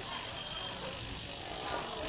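Merida road bike's Mavic wheels spinning freely on the stand, a faint steady sound.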